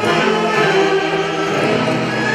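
Tunantada dance music played by a band, a full ensemble of melody instruments holding long notes over a steady accompaniment.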